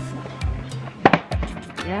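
Music with a steady beat; about a second in, two sharp knocks as a cardboard box of chocolates is dropped into a plastic shopping basket.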